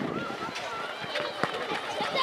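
Children's voices calling and shouting across an open playing field during a youth football match, with a short held call near the start and a sharp knock about one and a half seconds in.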